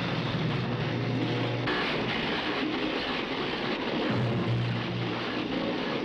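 Film sound effect of laboratory electrical apparatus sparking and crackling, with a low electrical hum that drops away about a second and a half in and returns briefly near the end; music plays underneath.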